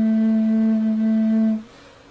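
Tenor flute holding one long low note, which stops about one and a half seconds in and leaves a short silent gap.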